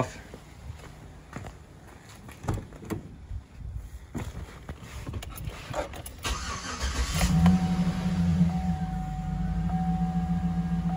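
A few clicks and knocks, then about seven seconds in a 2009 Chevrolet Silverado pickup's engine is cranked and starts, settling into a steady idle.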